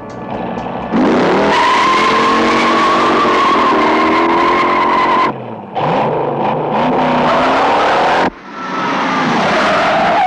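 Car-chase sound: tyres screeching loudly over revving car engines, starting about a second in. The sound is cut off abruptly about five seconds in and again about eight seconds in, resuming each time.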